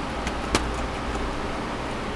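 Steady hiss and low hum of the room and recording, with one sharp click about half a second in and a couple of faint ticks, from hands handling small screws against the laptop's plastic bottom case.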